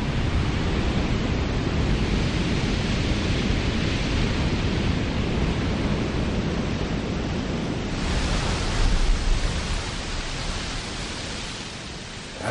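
Ocean surf breaking on the shore: a steady wash of water noise that swells about eight seconds in, then eases off near the end.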